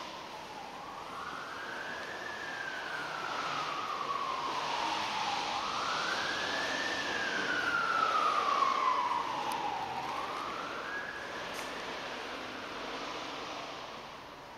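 A siren wailing, its single tone rising and falling slowly, about one sweep every four to five seconds; it grows louder toward the middle and fades near the end.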